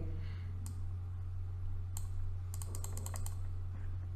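Computer mouse clicking: single clicks under a second in and about two seconds in, then a quick run of about eight clicks, over a steady low electrical hum.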